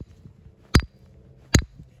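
Hard strikes on a stone, three sharp cracks about 0.8 s apart, each cut short. The rock holds and does not break.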